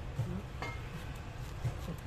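Faint light clicks and handling noise from a gloved hand working a plastic wiring connector in an engine bay, over a low steady background rumble.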